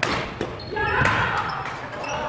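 Badminton rally: sharp racket strikes on the shuttlecock, one at the start and another about a second in, with a player's voice calling out between and over them.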